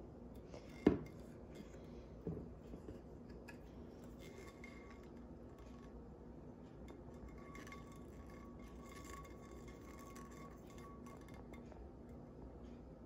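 A lidded drinking tumbler being handled and turned in the hand: a sharp knock about a second in and a lighter one a little over a second later, then faint handling over a low steady hum.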